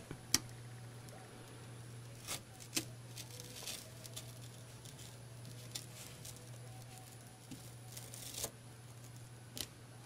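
Faint scratching of a razor blade cutting through adhesive transfer tape against cardboard, with a few small sharp clicks scattered through, over a low steady hum.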